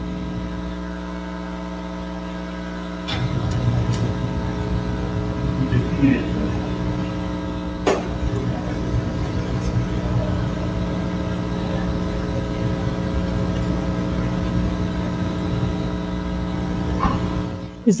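Steady electrical buzz and hum on an open audio line, a stack of fixed tones. A rushing noise joins about three seconds in, with a few faint clicks.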